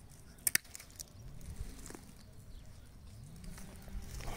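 Hand pruning shears (bypass secateurs) snipping through a woody thornless blackberry cane once, a sharp double click about half a second in.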